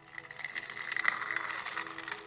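Metal scraping sound effect: a gritty, rattling scrape that swells to its loudest about a second in and then fades, over a steady droning music bed.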